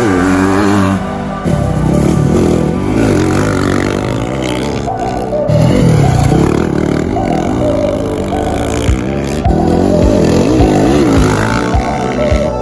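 Background music over a Yamaha dirt bike's engine revving up and down repeatedly as it is ridden through turns.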